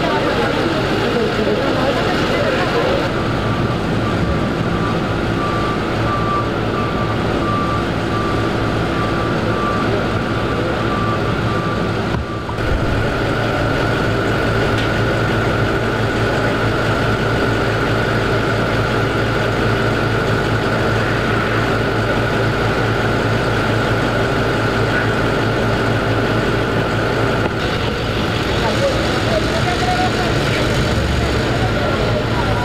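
Police trucks and vans idling with a steady engine hum, with voices in the background. A repeated beep sounds about once a second for several seconds in the first half, and a steady high tone runs through the second half.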